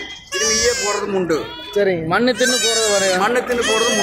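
A young goat kid bleating a few times in quavering cries, over a man talking.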